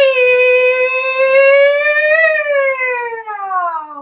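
A Peking opera performer's voice holding one long, drawn-out call in stylised declamation. The pitch swells slightly about halfway through, then falls away near the end.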